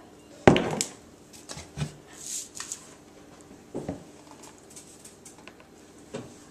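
A few knocks of kitchen utensils on a glass mixing bowl: one sharp knock about half a second in, then softer knocks near two and four seconds. The electric hand mixer is not yet running.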